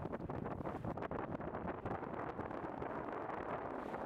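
Wind buffeting the microphone over choppy open water: a rough, uneven rumble with many faint crackles.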